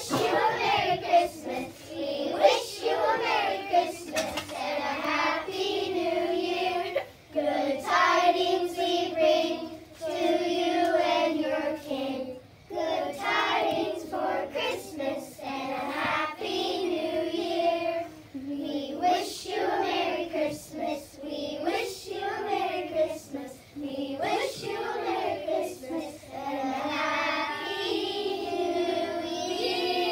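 A group of young children singing a song together, phrase after phrase with short breaths between.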